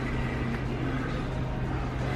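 Steady low hum and hiss of a store's background ambience, with no sudden sounds.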